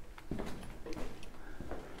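Footsteps on a rocky cave floor: a faint, uneven run of short taps and scuffs.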